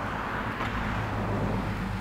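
Steady low hum with outdoor background noise.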